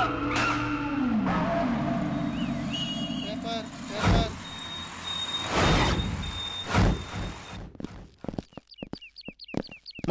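Film soundtrack: music ends, then a steady rushing noise with three loud whooshes about four, five and a half and seven seconds in. It turns choppy, with short chirping sounds near the end.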